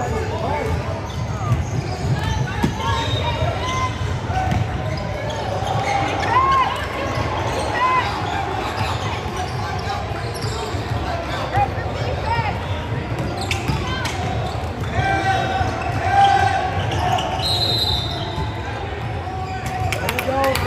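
Basketball game on a hardwood gym floor: a ball bouncing as it is dribbled, and many short sneaker squeaks as players cut and stop. Background voices echo in the large gym.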